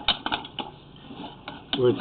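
Quick irregular clicks and rattling from a sewer inspection camera's push cable and reel as the cable is fed through the drain pipe, clustered at the start and again about a second and a half in.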